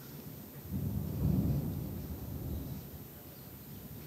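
A low rumble that swells about a second in and fades away over the next two seconds.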